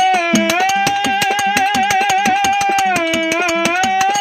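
Kannada dollina pada folk music: a held melody line that dips in pitch twice, over rapid, even strokes of small hand cymbals and a steady drum beat.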